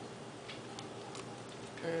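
A few faint, irregular clicks and light knocks as rice stuffing is scooped out of a stainless steel mixing bowl by hand.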